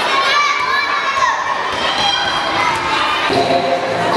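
Young girls shouting and cheering, many high voices at once rising and falling, echoing in a large sports hall. About three seconds in it gives way to lower chatter.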